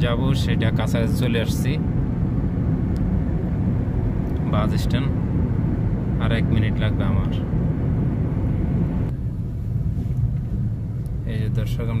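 Steady low rumble of a car's engine and tyres heard inside the moving car's cabin, with a voice coming and going over it.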